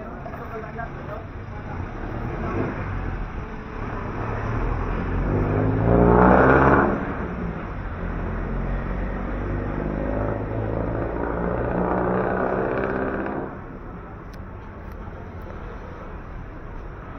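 Road traffic passing close by: motor vehicle engines swell and fade, with one vehicle passing loudest about six seconds in and another running loud until it drops away sharply near the end.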